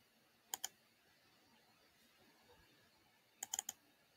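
Clicking at a computer: a pair of sharp clicks about half a second in, then a quick run of four clicks near the end, over a very quiet room.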